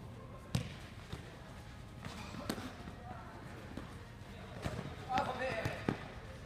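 Futsal ball being kicked and passed on an indoor court: four sharp thuds, one to two seconds apart. A player's voice calls out briefly near the end.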